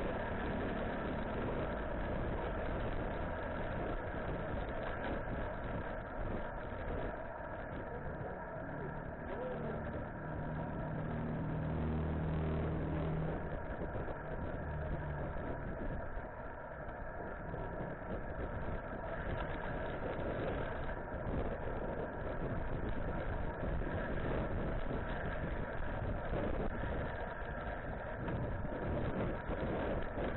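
Steady wind and road noise from riding a bicycle, rushing over the microphone. For a few seconds near the middle a motor vehicle's engine hums underneath.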